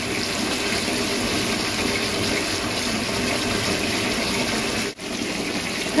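Bathtub faucet running steadily, its stream pouring into a tub piled high with bubble-bath foam, with a momentary break about five seconds in.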